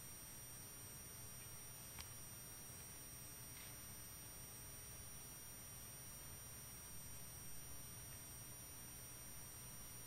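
Near silence: faint room tone with a steady, high-pitched electronic whine. There is a single faint click about two seconds in.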